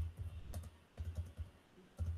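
Typing on a computer keyboard: a quick run of separate keystrokes as a name is finished, then the Enter key is pressed several times in a row.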